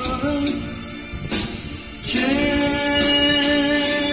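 A man singing a love song into a handheld microphone, holding long notes over music. The singing eases off about a second in, and a long held note starts about halfway.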